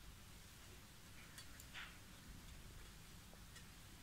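Near silence: room tone with a few faint soft clicks about a second and a half in, from a crochet hook working yarn as two pieces are joined with half double crochet.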